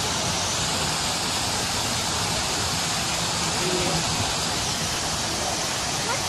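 Steady rushing hiss of Buckingham Fountain's water jets spraying and falling back into the basin.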